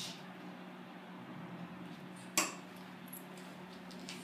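A single sharp clink of a hard object against glass or metal, a little past halfway, over a faint steady low hum.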